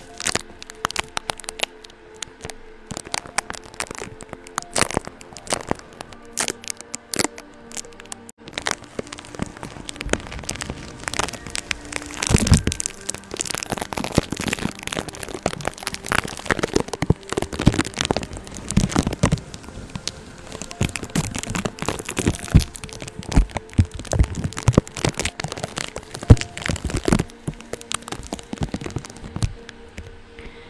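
Makeup brush sweeping over a tape-covered microphone, giving close crackling and scratching. The clicks are sparse at first, then become dense and continuous from about eight seconds in.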